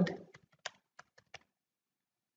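Typing on a computer keyboard: about five separate keystrokes, then the typing stops about a second and a half in.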